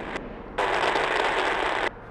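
A burst of crackling, static-like noise lasting just over a second, which starts and cuts off abruptly.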